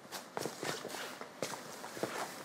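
Soft footsteps: a few faint, irregularly spaced steps.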